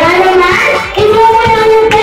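A group singing together over background music, holding a long note through the middle, with hand claps.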